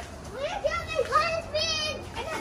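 A young child's high-pitched voice calling out: a few short rising calls, then one long held call near the end.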